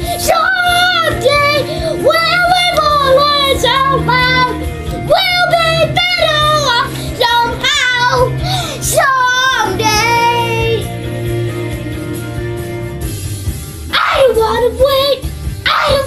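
A young boy singing loudly along to a karaoke backing track. His voice drops out for a few seconds past the middle while the accompaniment carries on, then comes back near the end.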